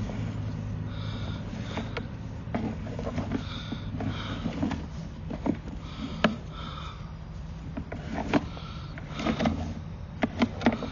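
Sewer inspection camera's push cable being worked back and forth through the drain line: scattered clicks and knocks of the cable and reel being handled, over a steady low machine hum.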